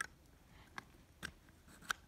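Plastic LEGO pieces clicking lightly as they are handled and slid into place, four small clicks over two seconds.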